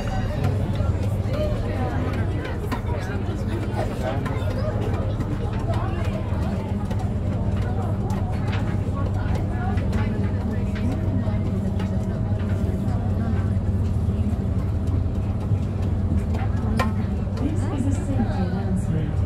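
Tour boat's engine droning steadily, heard inside the passenger cabin, with indistinct passenger chatter over it.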